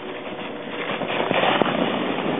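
A sled sliding down packed snow: a scraping hiss that grows louder as it comes close, with a few knocks as it bumps to a stop.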